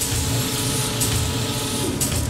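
Transition sound effect: a loud, steady mechanical whirring whoosh over a low rumble.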